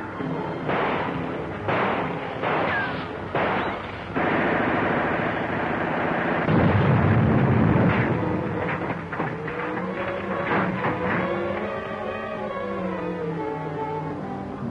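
Several sharp shots in the first four seconds, then a loud, dense rush with a deep boom about seven seconds in. Dramatic orchestral film music takes over from about nine seconds.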